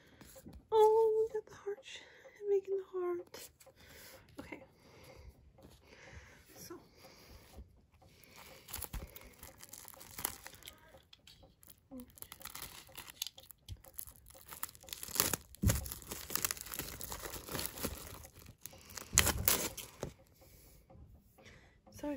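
Clear plastic shrink wrap being torn and crinkled off a CD album: a long run of crackling from about eight seconds in, loudest in two spells in the second half. A short stretch of voice comes first.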